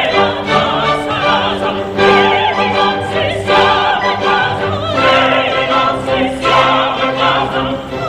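Operatic ensemble singing with orchestra: several voices sing together with wide vibrato over sustained orchestral accompaniment.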